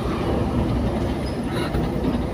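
Steady rumble of wind buffeting the microphone and road noise from riding a bicycle through street traffic.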